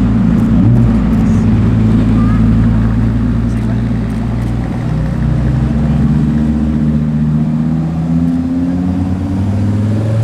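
KTM X-Bow GT-XR's turbocharged five-cylinder engine running steadily at low speed as the car rolls past. About halfway through, a second sports car's engine takes over with a different, steady tone that rises slightly near the end.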